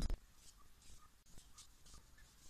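Faint scratching and rustling of hands tying string around a block of floral foam, with a short knock right at the start.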